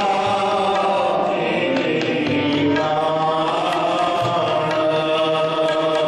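Sikh kirtan: men's voices singing a hymn in long, held phrases to harmonium accompaniment.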